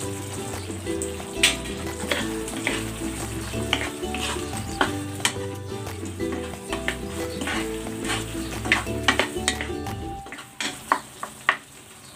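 Fried chicken pieces stirred through a simmering sauce in a nonstick wok with a wooden spatula: sizzling, with repeated scrapes and knocks of the spatula against the pan.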